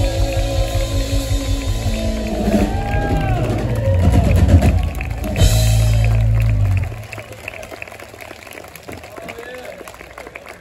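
Country band of electric and acoustic guitars, bass, drums and keyboard playing the last bars of a song: a drum fill runs into a final chord with a cymbal crash, held and then cut off sharply about seven seconds in. After that the audience cheers and applauds, at a lower level.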